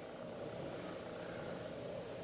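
Faint, steady background hum and hiss of room tone, with no sudden sounds.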